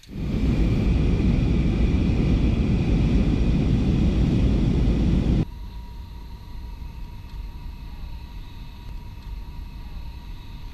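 Airliner cabin noise: loud, steady jet engine noise that cuts off suddenly about five seconds in. A much quieter steady cabin rumble with a faint even hum follows.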